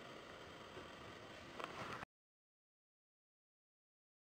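Near silence: faint room hiss, then the sound cuts off to dead silence about two seconds in.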